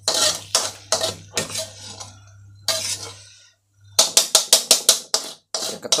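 Metal spatula scraping and clinking against a wok while stir-fried berries are scooped out. About four seconds in comes a quick run of taps, knocking off food that sticks to the spatula.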